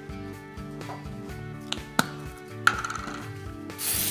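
Static Guard aerosol can sprayed onto a cloth: a loud, high hiss lasting about half a second near the end, after a couple of sharp clicks as the can is handled and its cap comes off. Quiet background music runs underneath.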